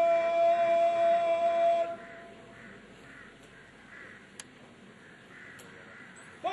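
A drawn-out shouted parade word of command, held on one high pitch and cutting off about two seconds in. Then a quiet open-air background with a couple of faint clicks.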